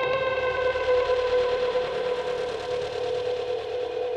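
Dark progressive psytrance: a sustained synthesizer drone holding one steady note with a stack of overtones, like a long siren tone.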